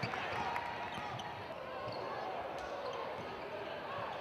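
A basketball bouncing on a hardwood court a few times, with crowd voices throughout.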